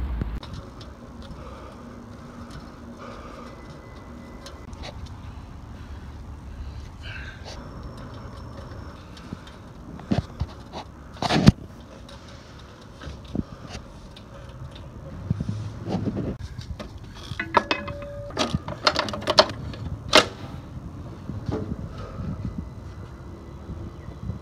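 Street background noise with scattered clicks and knocks as an orange Biketown bike-share bicycle is wheeled and handled. There is one sharp knock about halfway in and a run of rattling knocks in the last third, as the bike is brought up to its parking spot.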